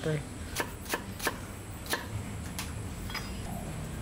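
Kitchen knife dicing carrot on a wooden chopping block: a handful of sharp, irregular knocks of the blade striking the board, most of them in the first three seconds.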